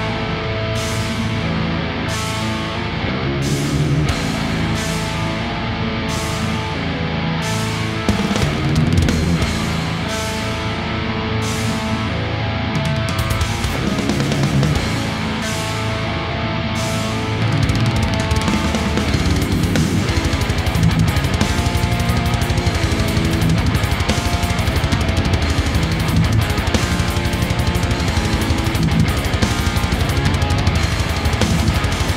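Harley Benton Amarok 6 baritone electric guitar with EMG Retro Active pickups playing a heavy metal riff. For about the first 17 seconds it plays separate hits roughly a second apart, then shifts to denser, faster and slightly louder riffing.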